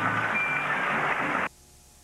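Studio audience applause with the show's music under it, cut off suddenly about one and a half seconds in, followed by a brief near silence.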